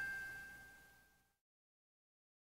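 The last note of a chime-like intro jingle ringing out and fading away, dying out about a second in, followed by silence.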